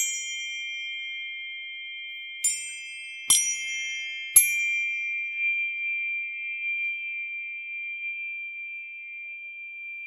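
Tuning forks struck one after another, four strikes in the first half. Their several high, pure tones ring on together and fade slowly.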